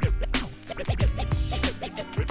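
Hip-hop beat with record scratching over it: short quick back-and-forth pitch swoops laid over a steady kick-drum pulse of about two hits a second.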